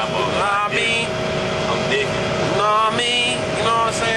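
Steady drone of a moving Greyhound coach heard from inside the passenger cabin: road and engine noise with a constant hum, under men's voices talking.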